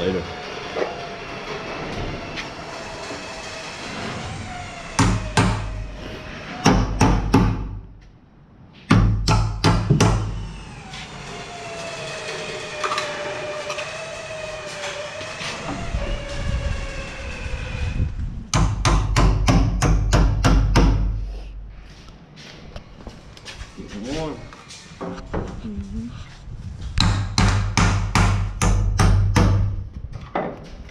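Hammer driving nail-on electrical boxes into wooden wall studs, in several bursts of quick, sharp blows.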